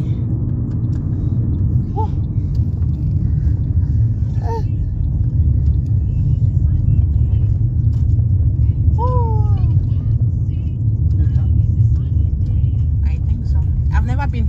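Steady low rumble of a car's road and engine noise, heard from inside the cabin while it drives, with a few short voice-like sounds over it.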